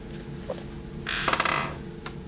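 A paperback book being handled and put aside, with a short rustle of paper pages about a second in, over a faint steady hum.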